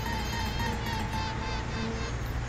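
Honeybees buzzing: a steady, dense buzz with a thinner hum drifting up in pitch near the start.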